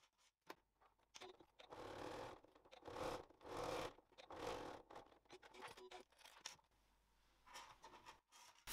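Faint rustling and scraping of fabric being handled, in a few short swells with small ticks between them.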